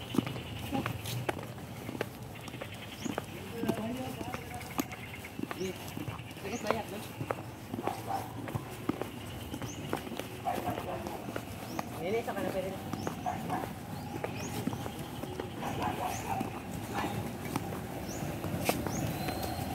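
Indistinct voices of people in the background, with scattered rustles and knocks from a phone camera rubbing against clothing as it is carried.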